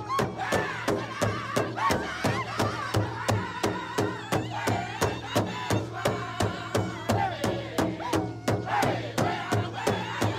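Powwow drum and singers: a steady drum beat at about four strokes a second, under high, wavering group singing.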